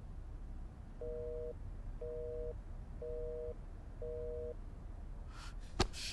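Telephone busy tone: four short two-tone beeps, each about half a second long, coming once a second, the sign that the called line is engaged. A sharp click comes near the end.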